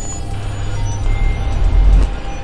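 A deep, low rumble swells louder over about two seconds and cuts off suddenly at the end, a sound-design swell laid under an animated logo.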